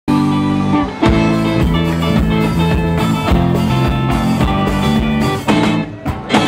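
Live band playing loud amplified music on stage, with sustained guitar and keyboard-like chords over drum hits.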